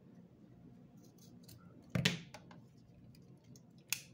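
Scissors cutting through satin ribbon with one loud snip about halfway, then the sharp click of a long-necked utility lighter sparking alight near the end, among faint handling rustles.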